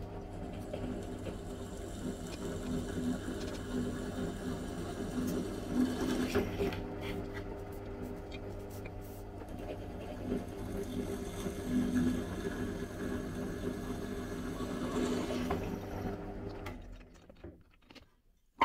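A steady low mechanical hum with light scraping and clicking of metal parts being handled. The hum cuts off near the end, leaving a few sharp taps.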